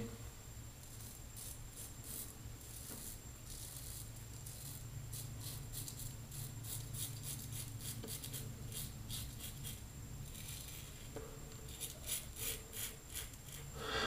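Fatip Testina Gentile open-comb safety razor with a Voskhod double-edge blade scraping through lathered stubble on the neck and cheek: quiet rasping strokes, one after another.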